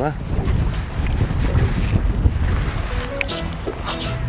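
Wind buffeting the microphone on an open boat, a loud, uneven low rumble. Background music comes in about three seconds in.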